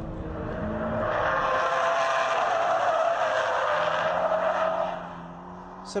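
Toyota GT86's tyres squealing through a long sliding drift, building from about a second in and dying away near five seconds, with its flat-four boxer engine running underneath.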